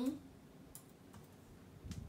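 A few faint, scattered key clicks from typing on a MacBook laptop keyboard.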